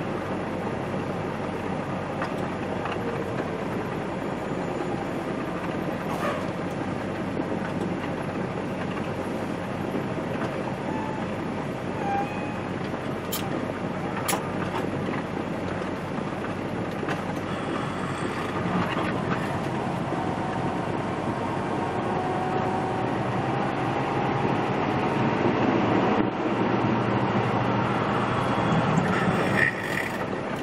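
Tractor-trailer cab interior while driving: the truck's diesel engine running under steady road and tyre noise, growing louder over the last several seconds.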